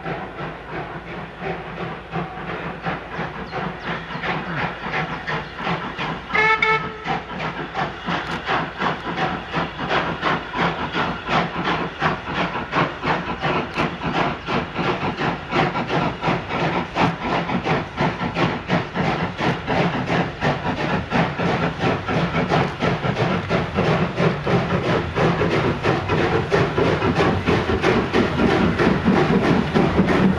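Double-headed steam passenger train, LSWR O2 tank engine W24 leading and T9 4-4-0 No. 30120 behind, approaching and passing with rapid regular exhaust beats that grow steadily louder. A short whistle blast sounds about six seconds in.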